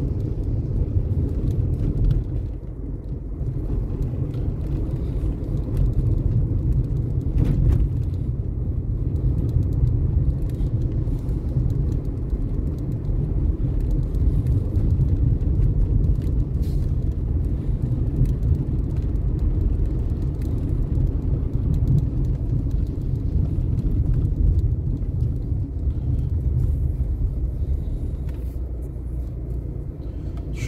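Car driving through town traffic, heard from inside the cabin: a steady low rumble of engine and tyre noise.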